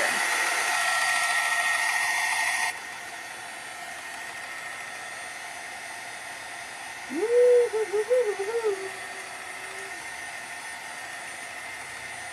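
Handheld craft heat tool blowing hot air to dry wet watercolour paint. It runs loud and steady, then drops to a quieter steady blow about three seconds in. A short hum from a woman's voice comes in about halfway through.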